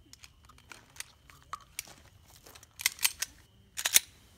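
Small clicks and rattles of a pistol being reloaded by hand. Sharper, louder clicks come in a cluster about three seconds in and again just before the end, as the magazine goes home.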